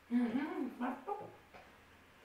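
A wordless voice-like sound: a run of short pitched calls that glide up and down, lasting about a second and a half.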